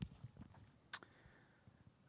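Faint handling noise with a single sharp click about a second in.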